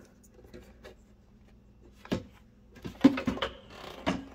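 Soft handling noises: a few short clicks and rustles of wires being moved by hand, starting about two seconds in, the loudest just after three seconds, after a quiet start.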